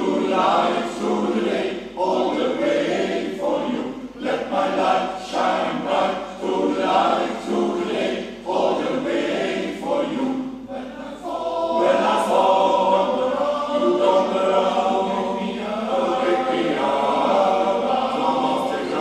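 Men's choir singing together in short phrases, moving into longer held notes about twelve seconds in.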